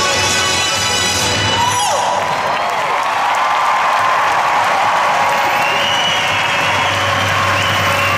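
Sustained chords of the skating program's music end with a falling glide about two seconds in, then an arena crowd cheers and applauds, with whoops and whistles.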